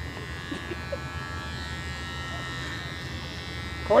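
Electric hair clippers buzzing steadily as they cut through a long, full beard.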